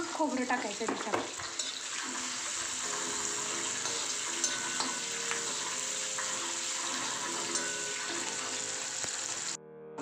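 Sliced onions and garlic sizzling in hot oil in an iron kadhai, with a few scrapes and clicks of a metal slotted spatula stirring them. The sizzle cuts off suddenly just before the end.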